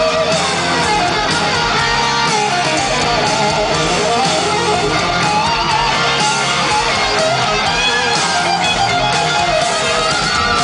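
A live hard rock band playing loud, with an electric guitar leading on a line that wavers and bends in pitch.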